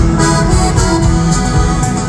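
Norteño band playing live through an arena sound system: accordion and guitars over bass and a steady drum beat.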